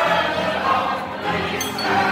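A crowd of bar patrons singing a song together to a keyboard accompaniment.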